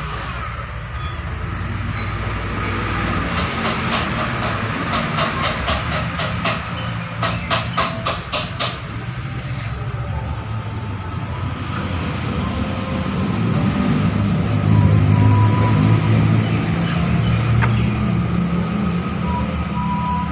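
A small wire brush scrubbing a Suzuki Ertiga spark plug in quick scraping strokes, about five a second and loudest in a run of strokes a few seconds before the middle. Under it a steady low hum of a running motor grows louder in the second half.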